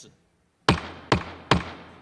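A wooden gavel struck three times on the chair's desk through the desk microphone, sharp knocks about half a second apart, each with a ringing fade: the chair gaveling the session open.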